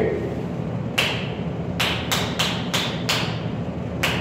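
Thin painter's glove being pulled and snapped on the hand: one sharp snap about a second in, then five quick snaps in a row. A steady low hum runs underneath.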